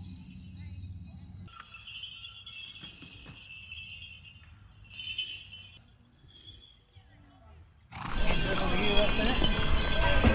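Small bells on a horse's tack jingling softly as the horse moves, with an occasional faint hoof knock. About eight seconds in, a much louder mix of crowd voices and street noise starts suddenly.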